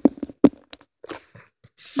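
Handling noise: a few short sharp knocks, followed by a burst of rustling near the end.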